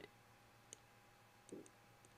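Near silence broken by a few faint computer-mouse clicks, one about a third of the way in and a quick pair near the end, as pen-tool anchor points are clicked into place.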